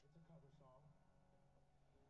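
Faint speech, a voice talking quietly at a very low level, barely above room tone.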